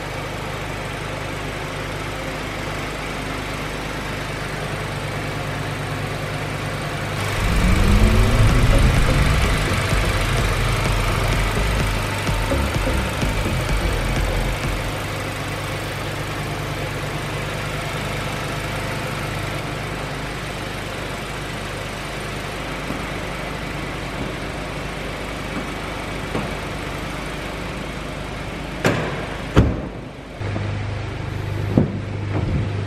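The 2021 VW Golf 8 GTI's 2.0-litre turbocharged inline-four idles steadily, then is revved about seven seconds in. The revs rise and stay up for several seconds before settling back to idle. Near the end come two sharp knocks as the bonnet is shut.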